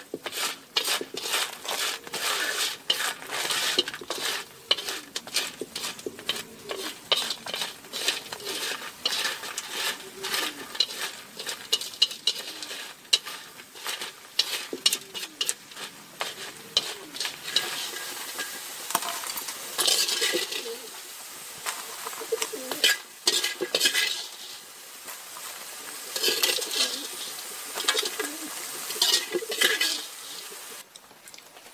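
Small whole crabs sizzling in oil in a steel wok as they are stir-fried: quick, dense clicks and taps of bamboo chopsticks and crab shells against the metal through the first half, then fewer, longer scraping strokes against the pan over the sizzle.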